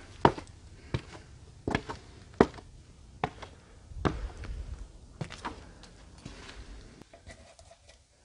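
Irregular footsteps and knocks, roughly one a second, of a person moving through a cramped space. The two sharpest thuds come just after the start and about two and a half seconds in, and it grows quieter over the last two seconds.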